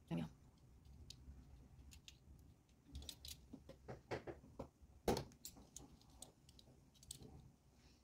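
Faint scattered clicks and taps of small metal parts and hand tools being picked up and set down on a workbench while a miniature silver car is assembled. The clicks bunch up in the middle, with the loudest knock about five seconds in.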